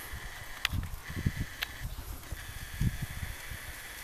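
Quiet outdoor background with a few soft, low thumps at irregular moments and a couple of faint clicks.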